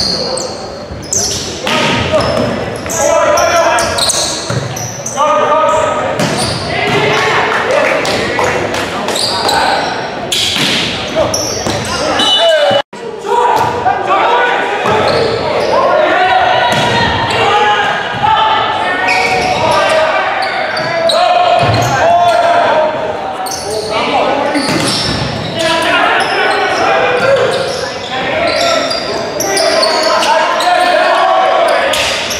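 Volleyball rally in a large gym: players and spectators shouting and calling, with repeated smacks of the ball being hit and bouncing on the hardwood floor, all echoing in the hall. The sound cuts out for a split second about thirteen seconds in.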